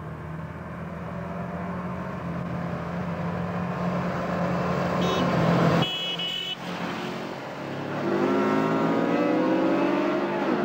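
A group of motorcycles (a Yamaha TZR250 two-stroke twin and two Suzuki GS500Es) approaching, their engine sound growing steadily louder until it cuts off abruptly about six seconds in. After a short lull the engines come in again, rising in pitch as the bikes accelerate toward the camera.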